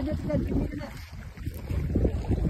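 Wind buffeting the microphone, a steady low rumble, with a person's voice briefly at the start.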